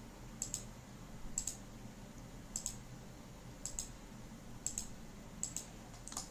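Computer mouse clicking six times, about once a second, each click a quick double tick of press and release.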